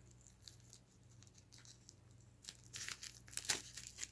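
Small plastic mailing pouch crinkling and tearing as it is opened. It is faint at first, with sharp crackles in the second half.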